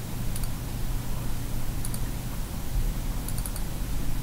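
A few faint computer mouse clicks, with a cluster of them near the end, over a steady low hum and hiss from the microphone.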